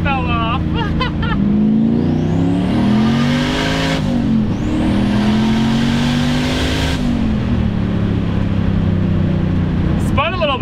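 Turbocharged LS V8 pulling hard through a gear change, heard from inside the car. The engine note climbs for about two seconds and drops at a shift about four seconds in. It climbs again and eases off about seven seconds in, with a faint turbo whistle rising at the start of each pull.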